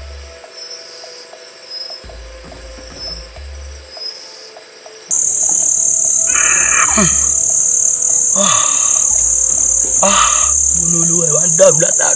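Night insects, crickets, chirring in a loud, steady, high-pitched drone that starts abruptly about five seconds in, with a man's strained groans over it. Before that, soft film music with a pulsing bass and faint chirps.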